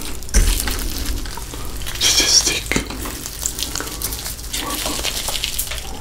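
Crisp Cheetos-crusted cheese stick crackling as gloved hands handle it and break it apart close to the microphone. There is a burst of denser crackling about two seconds in.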